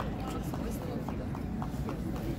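Running footsteps of a football player on an artificial turf pitch, a quick even series of short taps about three a second.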